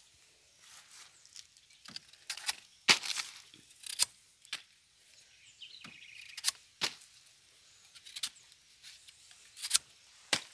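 A bunch of banana prata being broken down by hand and knife: a series of sharp snaps and knocks as hands of bananas are cut from the stalk and set down on the pile, the loudest about three and four seconds in.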